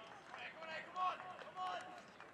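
Men's voices calling out in short, pitched shouts, about four calls across two seconds, with a few faint knocks between them.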